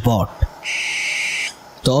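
Owl sound effect: a single harsh screech lasting about a second, with a short low thump just before it.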